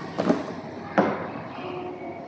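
Quiet room tone with two brief handling noises from a seated pianist settling at a grand piano, a soft knock about a quarter-second in and a sharper click about a second in, just before playing begins.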